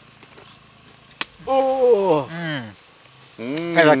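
A man's voice in a drawn-out exclamation whose pitch falls, from about one and a half seconds in, over a faint steady hiss; a single sharp click comes just before it.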